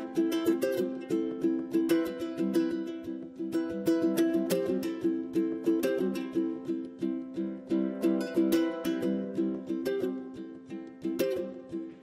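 A ukulele played solo, a steady run of plucked notes and chords with no singing, getting quieter toward the end.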